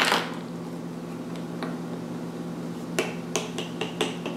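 Hard plastic toy figure tapped down on a granite countertop: one sharp tap at the start, a faint one after about a second and a half, then a quick run of about five light taps near the end as the figure is hopped across the counter.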